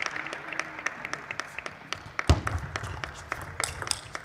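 Scattered clapping from a small crowd, with the sharp clicks of a plastic table tennis ball striking paddles and the table during a doubles rally. A single louder knock comes a little over two seconds in.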